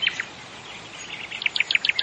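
Birds chirping over a steady faint outdoor background hiss: a few chirps at the start, then a quick run of short chirps near the end.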